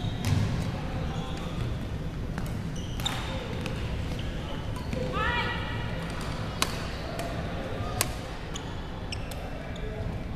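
Badminton rally: racket strings striking the shuttlecock as sharp cracks, the loudest about six and a half and eight seconds in, with rubber-soled court shoes squeaking on the wooden gym floor.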